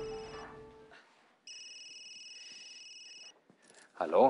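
Background music fading out, then a telephone ringing: one electronic trilling ring lasting nearly two seconds.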